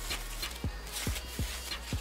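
Plastic wrap and foam packaging rustling and crinkling as it is unwrapped by hand, with a few low thumps from handling.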